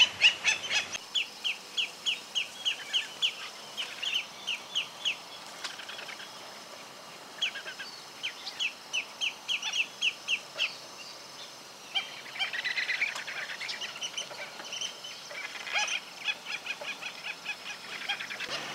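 Black-necked stilt calling: runs of short, high notes, about four to five a second, in bouts broken by brief pauses. A denser stretch of overlapping calls comes about two-thirds of the way through.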